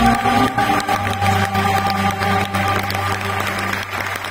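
The last held notes of a Turkish classical ensemble and singer die away in the first second. Audience applause then takes over, dense and steady, with a low steady tone running beneath it.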